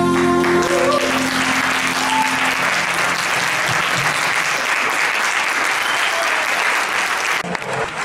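Audience applauding: dense, steady clapping that cuts off suddenly near the end. The last held chord of the song's backing music fades out during the first two seconds.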